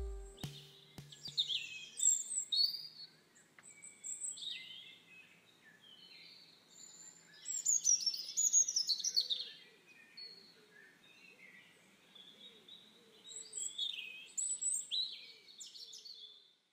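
Birds chirping and singing in short, varied phrases, busiest about halfway through and again near the end. The last low note of a music track dies away in the first two seconds.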